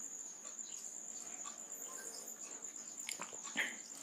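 Quiet room tone with a faint, steady high-pitched tone running through it, and a faint short sound about three and a half seconds in.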